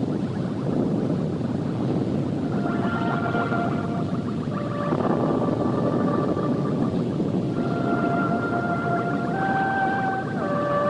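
Soundtrack of a dense low rumble with long held musical notes coming in about two and a half seconds in and moving to a new note every two seconds or so.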